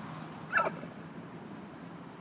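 Pit bull on a guard command, giving one short, high-pitched bark that falls in pitch about half a second in.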